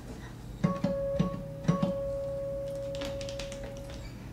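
Acoustic guitar: the same high note plucked three times about half a second apart, the last one left ringing for a couple of seconds.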